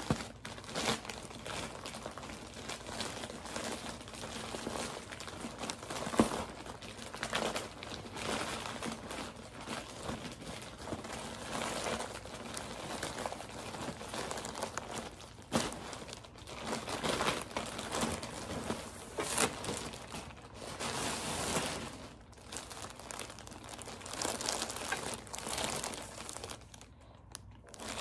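Plastic shipping bag crinkling and rustling in irregular bursts as it is handled and opened, ending with a jacket in a clear plastic bag being pulled out.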